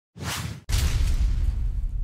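Title sound effect: a short whoosh, then a second, louder whoosh with a deep rumbling boom that slowly dies away.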